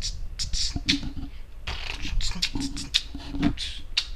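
A man beatboxing: short hissing and clicking mouth sounds in an irregular run, with a few low hums.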